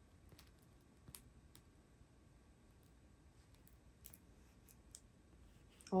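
Faint, scattered light clicks and taps from a hand handling a diamond painting canvas, over a low steady background rumble.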